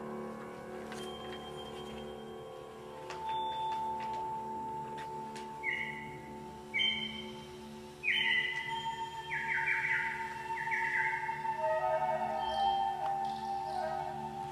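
Wind orchestra playing the soft opening of a concert piece. Held low chords sound throughout, and a long sustained tone enters about three seconds in. From about halfway, short high phrases come in several times, the last ones the loudest.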